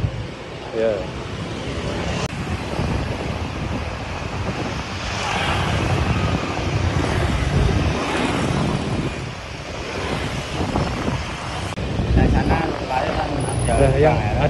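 Street traffic: motorbikes and cars passing on a town road, with a louder pass swelling up about halfway through.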